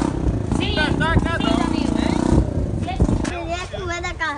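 An engine idling steadily under people's voices, its hum dropping away about two and a half seconds in.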